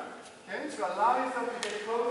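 A voice speaking, with a single sharp click about one and a half seconds in.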